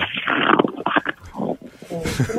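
Muffled rustling and handling noise over a telephone line as the telephone operator sets the handset aside to put the call on hold, dying away to fainter muffled sounds after about a second.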